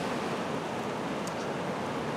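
Steady, even hiss of outdoor background noise with no distinct events.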